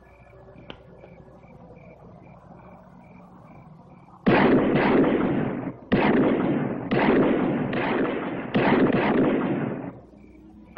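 A rapid series of about five loud gunshots, each with a long echoing tail, beginning about four seconds in. Before them there is only a faint, evenly pulsing high beep.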